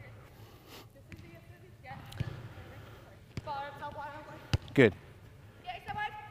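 Soccer ball being passed on artificial turf: a few sharp kicks spaced a second or so apart, the loudest about four and a half seconds in, with faint voices calling in between.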